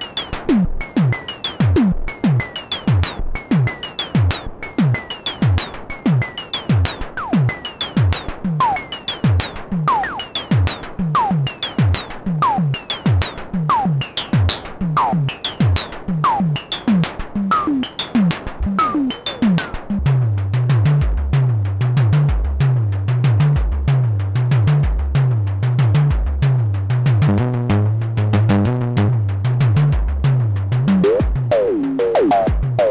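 Moog DFAM (Drummer From Another Mother) analog percussion synthesizer running its step sequencer: a fast repeating pattern of synthesized drum hits, each falling sharply in pitch, with the pitch of the hits shifting as the knobs are turned. From about two-thirds of the way in, a deeper, longer-ringing tone joins, stepping between a few notes under the hits.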